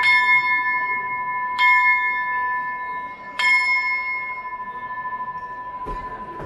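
A small hand-struck bell on a procession throne, struck again about a second and a half in and once more about three and a half seconds in, each strike ringing on with clear steady tones and fading slowly. The strikes are the throne bell's signal to the bearers who carry it.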